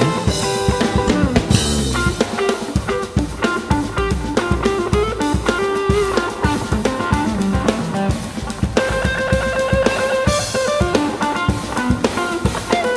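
A jazz-rock trio playing live and loud: electric guitar lines over a busy drum kit and electric bass.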